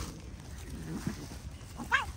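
A cat gives one short, high meow near the end.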